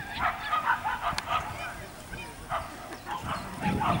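Italian greyhounds yipping and barking excitedly: many short, high calls in quick succession, several a second.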